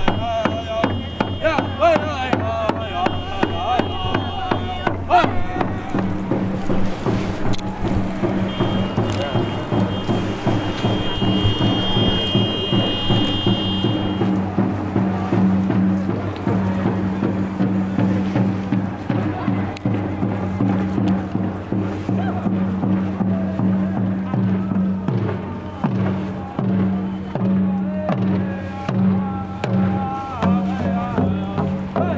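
A marching crowd: voices over a steady rhythmic beat, with a steady low hum joining about six seconds in.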